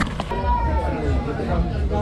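Indistinct chatter of several people talking at once in a crowded room.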